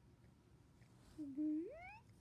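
A person's voice making a silly drawn-out squeal: one call starting about a second in, held low and then sliding steeply up in pitch, a bit like a meow.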